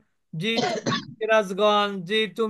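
A man clears his throat once, a short noisy burst about half a second in, then goes back to speaking.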